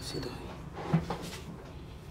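A barber's hands working over a man's chest, neck and jaw during a massage: rubbing and a few short knocks, the loudest just under a second in.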